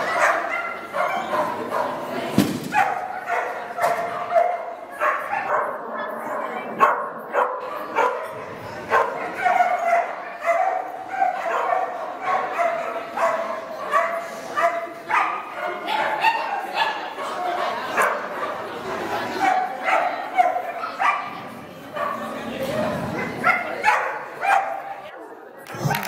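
A dog barking and yipping in a steady stream of short, high barks while it runs.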